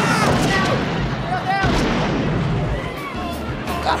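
An explosion sound effect, a loud rumbling blast that carries on for several seconds, with people screaming and shouting over it.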